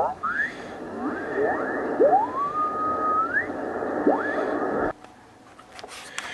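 Single-sideband receiver audio from a Yaesu FTDX3000 transceiver's speaker as its tuning knob is turned on the 40-metre band: static with garbled, pitch-shifted voice and several rising whistles as signals slide past, one whistle holding its pitch for about a second. The radio audio cuts off abruptly about five seconds in, leaving a few faint clicks and knocks.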